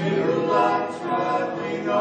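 A small group of voices singing together in harmony, holding long notes.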